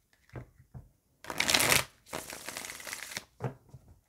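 A deck of oracle cards being shuffled by hand: a few light taps, then two longer passes of the cards against each other about a second each, the first the louder, and a last tap near the end.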